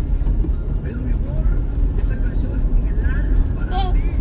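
Steady low road rumble inside a moving car's cabin, with a small girl's voice coming through softly in brief snatches and a short higher sound from her near the end.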